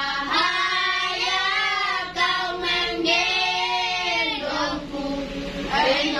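Group singing by children's and women's voices, a song carried in held notes of about a second each with short breaks between phrases.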